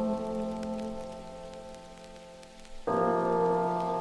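Rain falling, heard as a steady patter with scattered drops, under a sustained music chord that fades quietly away. About three seconds in, the music comes back suddenly with a fuller chord.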